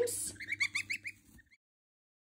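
Goslings peeping: a quick run of short, high peeps that stops abruptly about one and a half seconds in.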